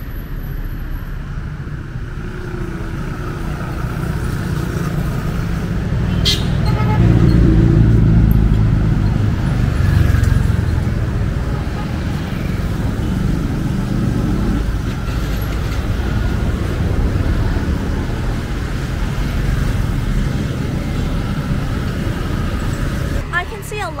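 Street traffic: a steady rumble of vehicles running along the road, swelling as one passes close about a third of the way in and then easing off, with a single sharp click near the same moment.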